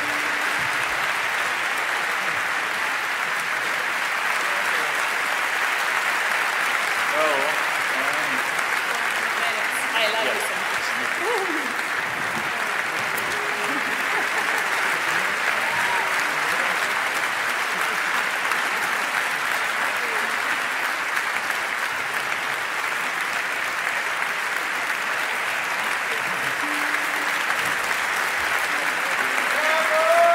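Concert audience applauding steadily and at length. A few voices call out from the crowd around a quarter of the way through, and another near the end.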